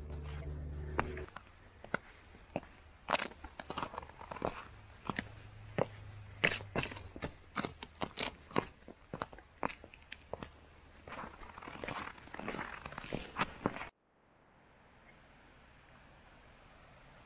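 Footsteps of leather work boots crunching and scraping over snow-dusted ice and rock, in an uneven walking rhythm. A low steady hum sits under the first second, and the steps cut off suddenly near the end, leaving a faint hiss.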